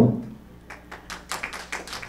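Scattered hand clapping from an audience, a quick irregular patter of claps that starts a little under a second in.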